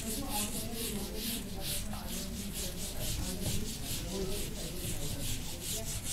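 Whiteboard duster wiping marker writing off a whiteboard: a steady run of short, quick scrubbing strokes, about three a second.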